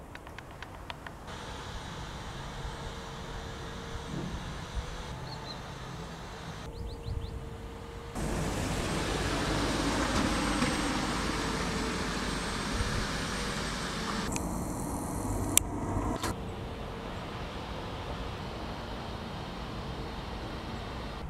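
Street traffic noise, with cars passing. It gets suddenly louder about eight seconds in, and there are a few faint clicks.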